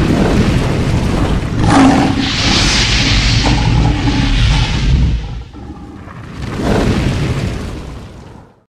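Cinematic logo-intro sound effects: a deep rumbling boom with a sharp hit a little under two seconds in, under a hissing rush. It dies down about five seconds in, then a second, softer rush swells and fades out near the end.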